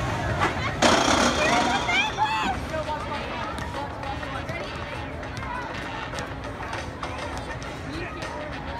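Roller-coaster station ambience at a Boomerang coaster: a short loud hiss about a second in, then excited voices for a second or so. After that, quieter background music and chatter carry on.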